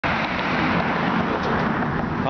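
A road vehicle going by: a steady rush of tyre and engine noise.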